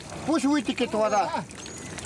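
Speech: a person's voice talking for about a second and a half, then a quieter stretch of outdoor background.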